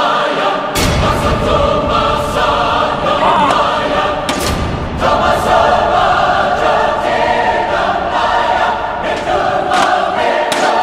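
Choral music with sustained sung chords, cut through by a few sharp, heavy thuds, one about a second in and another around four seconds in.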